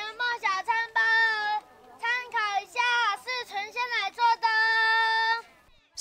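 A child's high voice singing out in two sing-song phrases, each ending on a long held note.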